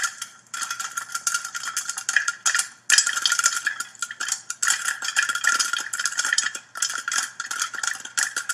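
Popcorn popping in a metal stovetop crank popper: dense, rapid, overlapping pops with kernels rattling in the pot. It starts suddenly and has a few brief lulls.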